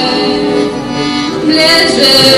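A woman singing a slow melody into a microphone, holding long notes that shift slowly in pitch.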